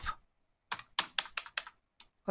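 Computer keyboard typing: a quick run of about seven keystrokes starting under a second in, as a router command is typed.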